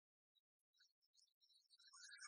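Near silence, with faint, scattered high-pitched tones that grow denser toward the end.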